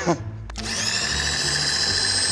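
Milling machine table power feed switched on with a click about half a second in, its small motor whirring up to a steady high whine as it drives the table across.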